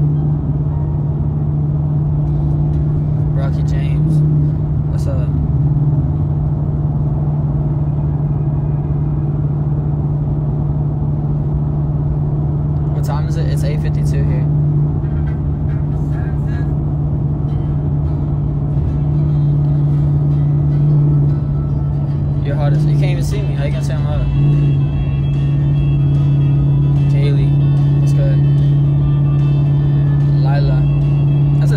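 Steady low drone of a car cabin while driving, with music playing under it.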